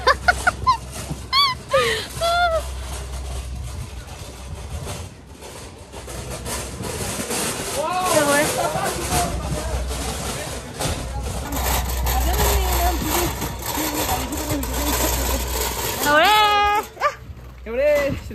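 A woman's voice talking and laughing in short spells, over a steady low rumble of wind on the microphone.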